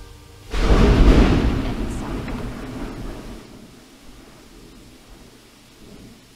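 Thunder: a loud, sudden crack about half a second in that rolls off into a deep rumble, fading over the next three seconds.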